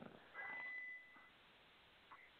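Near silence, with a faint, brief high-pitched beep lasting about half a second near the start.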